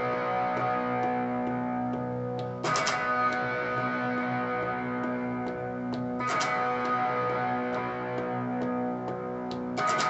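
Electric guitar through an amp playing a picked B power chord part with the octave on top, the notes ringing on, and a hard strummed chord hit about every three and a half seconds (three in all).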